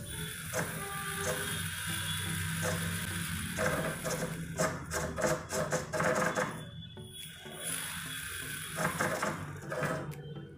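Brushless outrunner motor, driven through an ESC by the Arduino joystick transmitter, whirring as its speed rises and falls, with a run of clicks through the middle, over background music.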